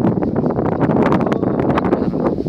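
Wind buffeting the camera's microphone: a loud, steady rumble with rapid crackling.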